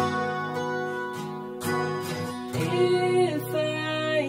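Music between sung lines: acoustic guitar strummed a few times under sustained chords, with a melody line moving between notes above it.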